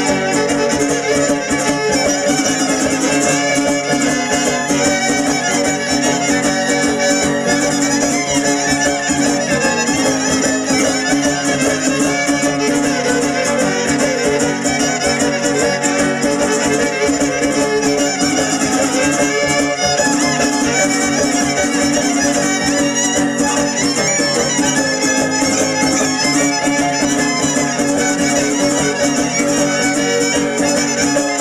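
Live son arribeño (huapango arribeño) string ensemble playing an instrumental dance tune without singing: violins leading over strummed guitar accompaniment, a steady and unbroken rhythm.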